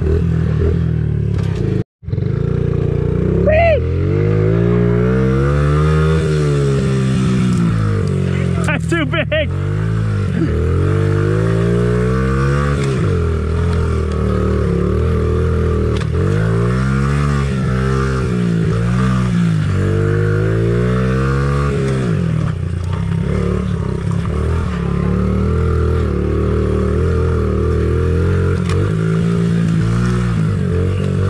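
Honda CRF50 pit bike's small single-cylinder four-stroke engine revving up and down over and over as the throttle is opened and closed through the turns, heard from on the bike. The sound cuts out for an instant about two seconds in.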